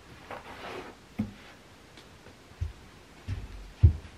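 Fabric-covered panels of a folding storage ottoman being handled and set down: several separate light knocks and thumps with a short rustle in the first second, the loudest thump near the end.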